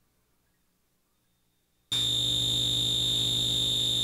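Near silence, then about two seconds in a steady, high-pitched electronic tone over a low buzzing hum starts abruptly and holds at one pitch.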